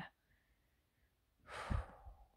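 Near silence, then about one and a half seconds in, a woman takes a short sighing breath before speaking again.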